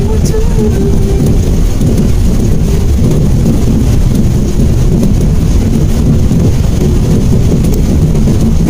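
Steady rain on a moving car together with tyre noise on the wet road, heard from inside the cabin: a constant heavy noise with no breaks.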